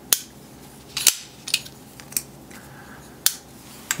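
Hinderer XM-24 frame-lock folding knife being worked by hand, its blade clicking against the detent and lock bar as it is swung shut and open. There are about six sharp clicks, irregularly spaced, two of them close together about a second in.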